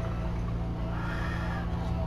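A steady low hum, with a faint higher tone held briefly about a second in.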